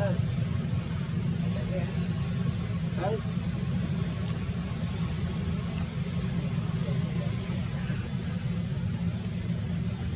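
A steady low rumble, like a running engine, with faint background voices and two sharp clicks around the middle.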